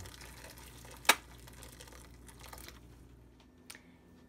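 Freshly boiled water poured from an electric kettle into a saucepan of sweet potato chunks: a faint splashing hiss, with one sharp click about a second in.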